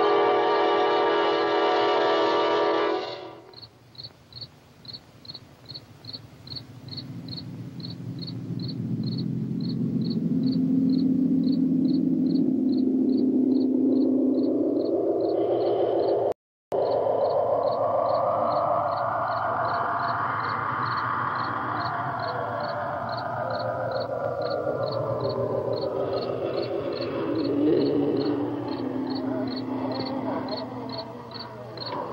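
A sustained music chord that cuts off about three seconds in. Then crickets chirp steadily, about three chirps a second, under a tone in the score that slowly rises in pitch and then falls away. All sound drops out briefly just past halfway.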